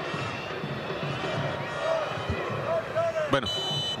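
Stadium crowd at a football match, a steady din of many voices. Near the end comes a brief high-pitched steady tone.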